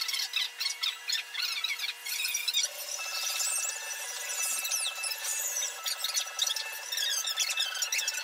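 A cloth-covered covering iron rubbed back and forth over heat-shrink film covering, squeaking continuously and irregularly in high pitches as the cloth drags across the film.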